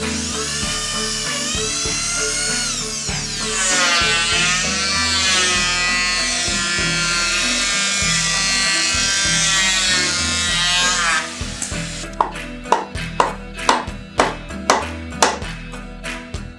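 Power tools working wood, an electric drill and then an electric hand planer, whining with a pitch that rises and falls as they speed up and slow down. From about twelve seconds in come sharp knocks, about two to three a second, like hammer blows on timber. Background music plays throughout.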